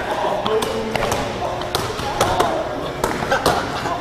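Scattered thuds and slaps in a gymnasium: basketballs bouncing on the hardwood court and players slapping their sides, with faint background voices.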